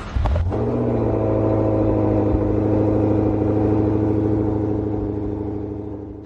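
A 2025 Volkswagen Jetta's 1.5-litre turbocharged inline-four starting, with a brief rise in revs about half a second in, then settling into a steady idle that fades out near the end.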